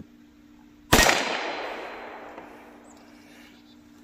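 A single shot from a Ruger Wrangler .22 LR single-action revolver about a second in, its report echoing and fading away over about two seconds.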